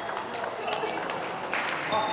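Quiet sports-hall background, then a table tennis serve near the end: the ball struck by a bat and clicking on the table.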